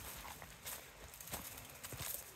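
Faint rustling and a few light footfalls in leaf litter on a forest trail.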